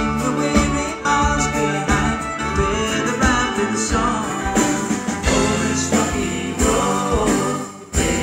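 Live folk-rock band playing, with acoustic guitar, mandolin, bass guitar, fiddle and drums; the music dips briefly just before the end.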